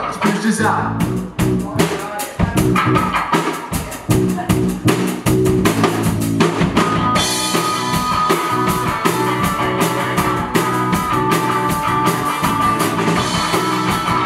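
Live country band playing: a drum kit beats steadily under bass and guitars. About halfway through, the band comes in fuller, with cymbal wash and a held electric-guitar line.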